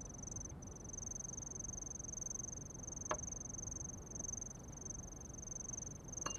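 A steady, high-pitched cricket trill, with a single click about halfway through.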